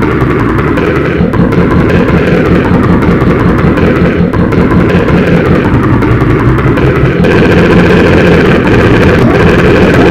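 Loud, dense wall of layered audio: many copies of the same clip stacked and pitch-shifted into a steady, buzzing mass, growing a little louder about two-thirds of the way in.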